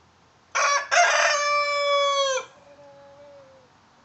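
A rooster crowing once: a short first note, then a long held note that drops in pitch at the end and trails off faintly.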